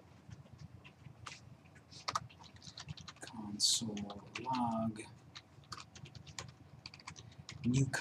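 Typing on a computer keyboard: irregular, quick key clicks as a line of code is entered.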